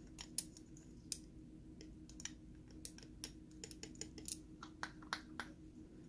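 Light, irregular clicks and taps of a metal tool and small parts against the aluminium body of a Honeywell VR9205 gas valve as it is taken apart by hand, over a faint steady hum.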